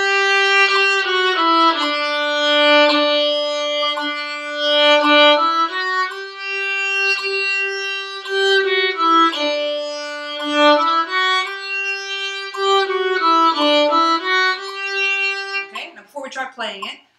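Solo violin playing an eighth-note triplet exercise. Longer held notes alternate with quick groups of three short bowed notes, stepping up and down in the instrument's middle range.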